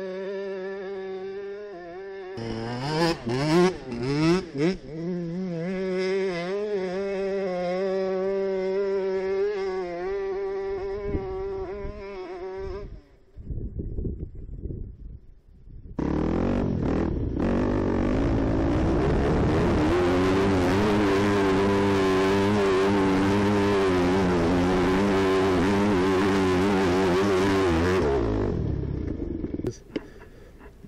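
Yamaha WR250F four-stroke single-cylinder dirt-bike engine idling, then blipped with several sharp revs about three seconds in, and running on. After a brief lull it starts again suddenly and runs loud at high revs under load for about twelve seconds, then drops away near the end.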